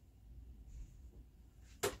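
Faint room noise, then near the end a single sharp click from the floor loom as the weaver works it between picks.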